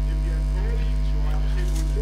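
Steady electrical mains hum, a low buzz at a constant level, with faint voices underneath.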